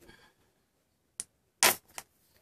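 Squeeze bottle of thick acrylic craft paint being squeezed over a plastic bowl: a small click about a second in, then a short, louder burst of noise near the end as the paint is forced out.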